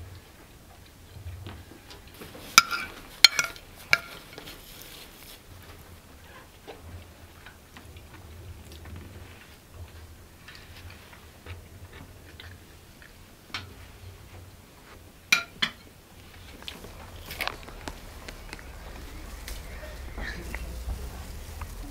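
Tableware clinking during a meal: a cluster of four sharp, ringing clinks about three seconds in and a few more around fifteen seconds in, with quiet handling and eating sounds between.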